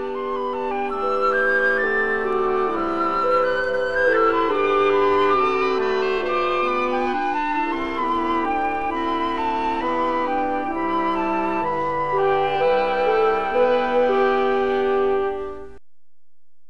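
Solo oboe playing a slow classical melody of held notes with vibrato, stopping suddenly near the end.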